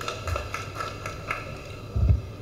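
Faint hall ambience with a few scattered light taps.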